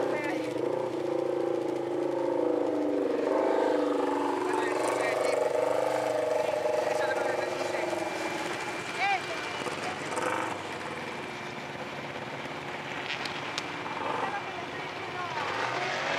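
An off-road vehicle engine runs at low revs, its pitch sagging and rising slowly. It fades after about the first half, leaving faint voices.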